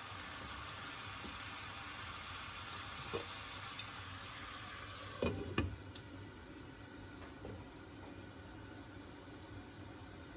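Squash and zucchini slices sizzling in melted butter in a skillet, steady throughout. A light knock comes about three seconds in, then a double clatter just after five seconds as the glass lid is set on the pan, after which the sizzle is a little quieter.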